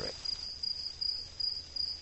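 Crickets chirping: a steady high trill broken into short regular pulses.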